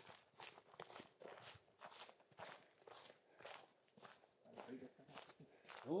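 Faint footsteps on a dry dirt path, about two steps a second.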